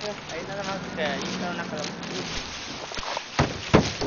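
Indistinct voices talking in the background, then a few sharp knocks near the end.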